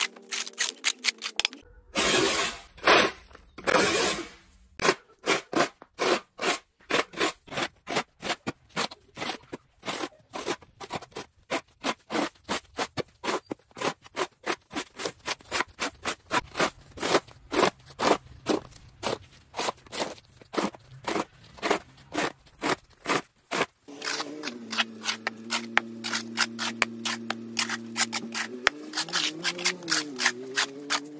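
Metal snow shovel scraping across a concrete walkway as wet snow is cleared: one longer scrape about two seconds in, then a steady run of short scraping strokes about two a second. Near the end, background music with held notes comes in under the scraping.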